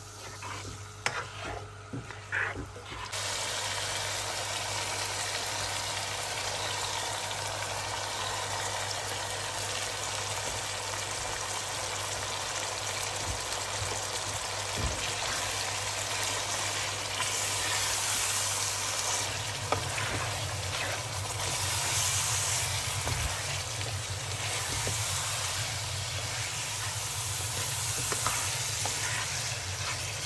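Chicken and chickpeas frying in oil and tomato masala in a pan, stirred with a spatula. There are a few sharp knocks of the spatula at the start, then a steady sizzle from about three seconds in.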